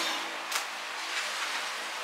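Steady background noise with a faint hum, and one sharp click about half a second in as a flame is struck to light a candle.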